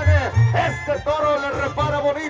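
Banda music played by a brass band with a tuba bass line, heard loud across the arena.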